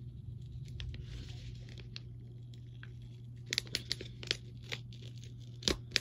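A mailed package being handled and torn open by hand: soft paper tearing and rustling at first, then several sharp clicks and snaps, the loudest near the end. A steady low hum runs underneath.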